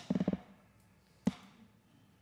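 A sharp knock, then a quick run of low thumps, then another single sharp knock about a second later.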